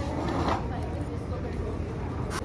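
Outdoor background noise: a low steady rumble with faint voices, and a brief louder voice-like sound about half a second in.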